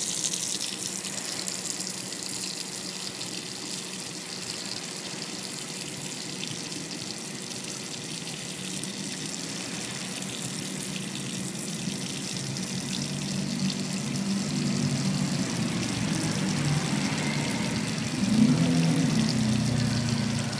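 Tap water running steadily from a faucet into a stainless-steel sink and down the drain. About two-thirds of the way in, a low hum joins under the water and grows louder toward the end.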